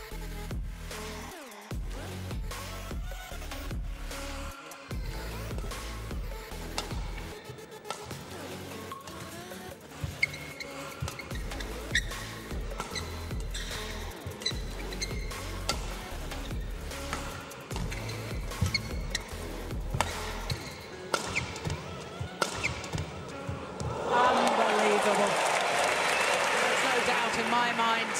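Badminton rally: rackets striking the shuttlecock in a quick, irregular series of sharp hits, over background music. About four seconds before the end, a crowd's cheering swells loudly.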